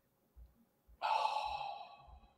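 A person sighing into the microphone, a single soft breath out about a second long that begins halfway through and fades away.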